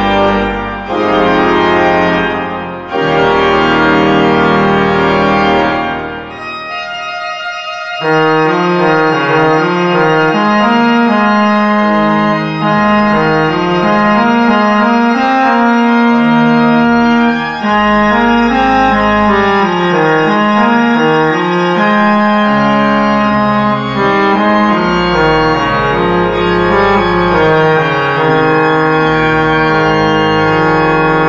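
Fisk pipe organ (Opus 134) playing full, sustained chords. About six seconds in, the sound dies away into the room's reverberation, and about two seconds later the organ comes in again with chords over a moving bass line.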